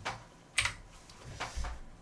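A few separate clicks and taps of computer keyboard keys being pressed, spread irregularly over a couple of seconds.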